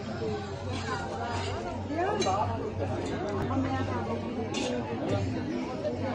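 Chatter of a small crowd: several people talking at once, their voices overlapping so that no single speaker stands out.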